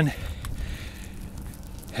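Footsteps climbing concrete stairs, faint against a steady low rumble on a phone's microphone, with a few light scuffs.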